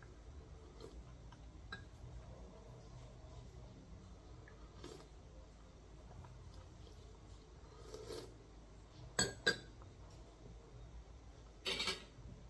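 Metal cutlery clinking and scraping faintly against a ceramic plate and mug while eating, over a low steady hum. Two sharp clinks a little after nine seconds in are the loudest, and a short louder clatter comes just before the end.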